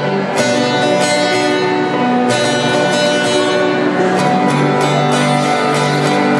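Several acoustic guitars strumming chords together in an instrumental passage, with a new chord struck every second or two.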